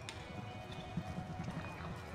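Hooves of a galloping reining horse striking the dirt of an arena: a run of low thuds that grows louder about halfway through.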